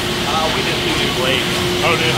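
Bakery production-line machinery at a band-blade bun slicer and its conveyor, running steadily with a constant hum under a wash of machine noise.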